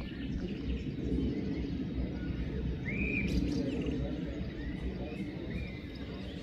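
Birds giving a few short chirps, the clearest one about three seconds in, over a steady low background rumble.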